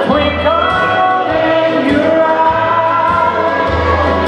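A man singing a country song live into a microphone, accompanied by electric guitar and a steady bass line.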